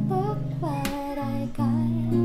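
A woman singing a pop melody over an acoustic guitar, which strums two chords about two-thirds of a second apart and rings underneath her voice.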